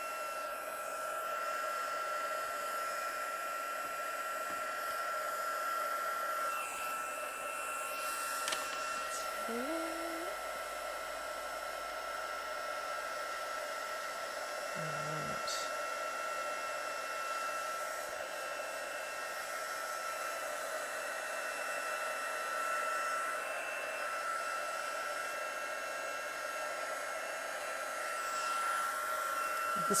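Craft heat gun blowing hot air steadily to dry a wet watercolour wash on cardstock, a constant rush of air with a thin steady whine.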